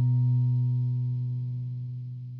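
Telecaster-style electric guitar's closing chord left to ring, with no new notes played; it holds and then fades away slowly from about half a second in.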